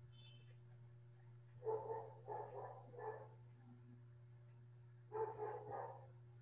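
Barking heard faintly through a video call: three short barks in quick succession about two seconds in, then another bark or two near the end, over a steady low hum.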